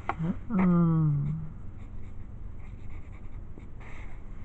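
A short wordless hum from a person's voice near the start, about a second long and falling in pitch. Faint scratching of pencil on paper follows.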